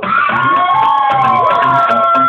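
Live music with a low pulsing bass beat, and audience members cheering and whooping over it in long, overlapping sliding cries that get loud right at the start.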